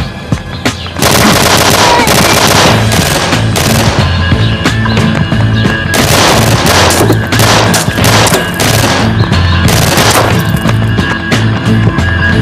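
Several long bursts of automatic gunfire from assault rifles, starting about a second in and crackling on with short gaps. Dramatic background music with a pulsing bass runs underneath.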